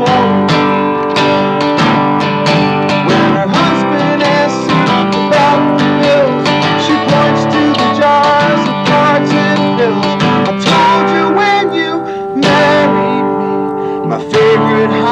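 Steel-string acoustic guitar strummed in a steady rhythm, playing a folk song.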